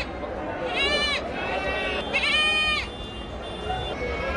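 Two high-pitched bleats from young Totapuri goats, each about half a second long and rising then falling in pitch. The first comes about a second in and the second just after two seconds, over a background of crowd voices.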